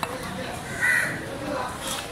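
A crow caws once, loudly, about a second in, over a background of voices.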